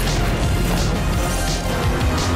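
A recorded pop song playing in an instrumental stretch without vocals: a steady beat of deep bass-drum hits and sharp, bright snare-like hits over sustained music.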